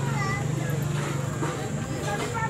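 People's voices talking over a steady low hum.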